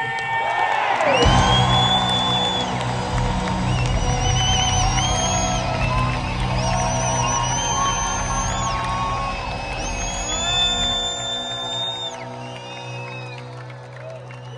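Live rock band holding out the end of a song in an arena, with a large crowd cheering and clapping over it. The sound gradually tapers off over the last few seconds.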